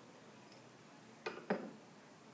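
Two short clinks of a glass test tube, about a quarter second apart, as it is set down into a wooden test-tube rack.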